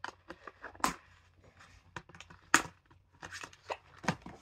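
Cardboard wand box and its packaging being torn open and rustled by hand: a string of short rips and crinkles, with two louder, sharper rips about a second in and about halfway through.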